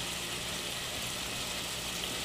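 Black-eyed peas and shrimp cooking in dendê palm oil in a pot on the stove, giving a steady, even sizzle.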